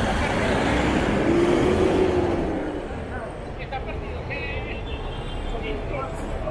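A truck driving past close by, its engine loud for the first two seconds or so and then fading into the steady noise of city street traffic.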